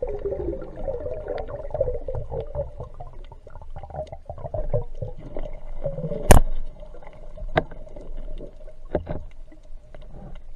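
Underwater sound through a diver's camera: muffled water movement and low rumble with a wavering hum, broken by a few sharp clicks or knocks, the loudest about six seconds in.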